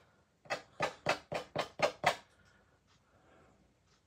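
Fan brush flicked against watercolour paper in seven quick strokes, about four a second, laying in twigs.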